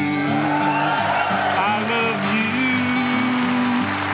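Country-style acoustic guitar accompaniment playing held notes between sung lines of a live song.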